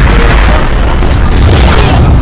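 Loud action-film background music with a heavy boom sound effect near the start and a deep rumble underneath.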